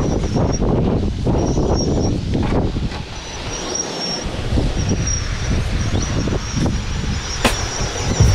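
Wind buffeting the microphone in uneven gusts, easing off for a moment around the middle, with a faint high whine that comes and goes and one sharp tick near the end.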